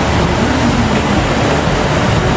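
KiHa 85 series diesel express train rolling slowly along a station track, a steady rumble of its diesel engines and wheels on the rails.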